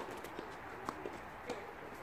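A tennis ball bounced on a hard court by a server before serving: a few short, sharp knocks about half a second apart.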